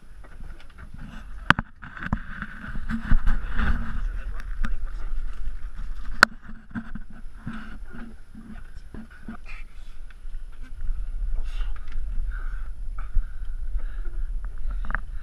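Knocks and bumps as a large tuna is hauled over the gunwale onto a small fishing boat's deck, over wind on the microphone and sea noise; two sharp knocks stand out, about a second and a half in and about six seconds in.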